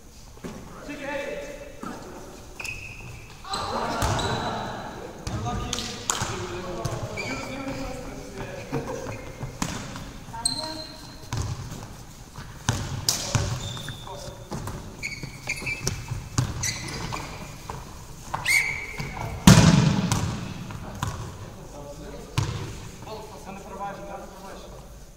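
Handball match play in a sports hall: a handball bouncing on the wooden floor, players' shouts and calls, and short high squeaks, all echoing around the hall. The loudest moment is a heavy thud a few seconds before the end.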